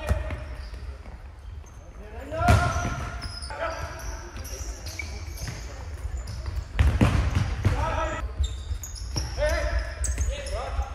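A futsal ball kicked and bouncing on a hard sports-hall floor: a few sharp thuds, with players' short shouts and calls in between.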